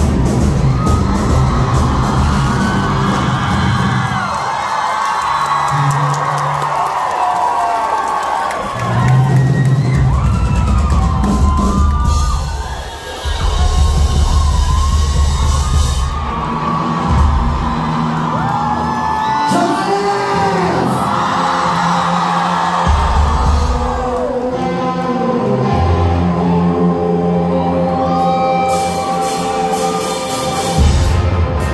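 Live rock band playing through a venue PA, with held low bass notes, while the crowd cheers and screams over it. The music shifts partway through as one song gives way to the next.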